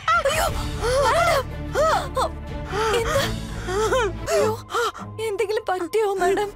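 A woman's voice crying out again and again in distress, with gasps, over background music.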